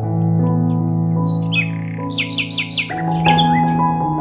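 Soft background music of long sustained chords, with a bird calling over it: a quick run of about six short descending chirps a little past two seconds in, then more sharp calls near the end.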